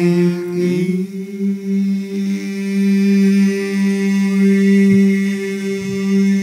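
Male a cappella voices holding one long sustained note, without words, steady in pitch like a chant; about a second in, a voice slides up to join the held tone.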